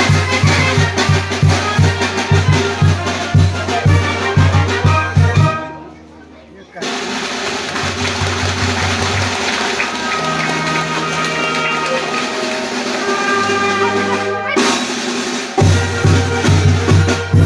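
Oaxacan brass band (banda filarmónica) playing dance music, with tuba and bass drum pounding a steady beat under the horns. About six seconds in the music cuts out for a moment. A quieter stretch of held tones with voices follows, and the full band's beat comes back near the end.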